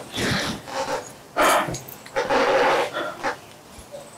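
Heavy breathing: three breathy exhales, each about half a second long and roughly a second apart.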